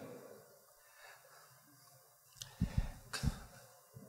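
A near-silent pause. About two and a half seconds in come a few short, low thumps with sharp clicks on the handheld microphone, three or four in just under a second: handling noise or breath pops.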